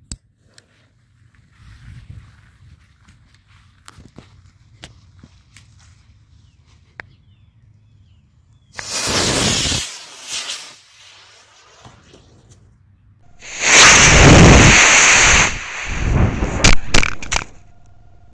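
A D12 model rocket motor firing. Its loud rushing hiss comes twice: once for about a second and a half partway through, and again, louder and with a high whistle on top, for about two seconds near the end. That burst is followed by choppy rushing noise and a few knocks.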